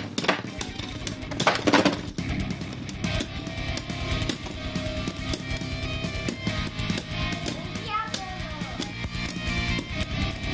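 Background music with a steady beat over two Beyblade spinning tops whirring and clashing in a plastic stadium, with loud sharp clacks in the first two seconds.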